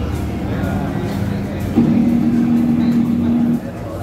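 Onboard engine sound of a Ducati V4 S at steady revs, played back through a TV's speaker. It starts abruptly a little before halfway, holds one even pitch for about two seconds, and stops suddenly as playback is paused.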